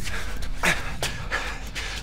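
A man panting hard: a run of quick, heavy breaths over a low steady rumble.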